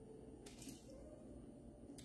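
Near silence: room tone, with a faint rustle of pepperoni slices being laid on a foil-lined tray, once about half a second in.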